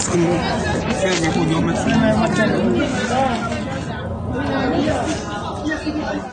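Several people talking at once: the chatter of a small group of voices.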